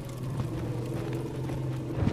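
A low, steady rumbling drone in a film soundtrack, with a few faint clicks over it.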